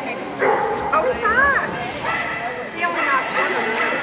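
A dog barking and yipping, with a wavering high yelp just over a second in, over people talking in the background.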